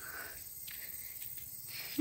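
Quiet outdoor ambience with a faint, steady, high-pitched insect drone.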